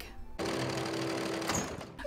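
Electric sewing machine running fast for about a second, then stopping.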